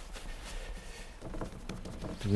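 Hands quietly patting and shaping a loaf of bread dough on a floured wooden board.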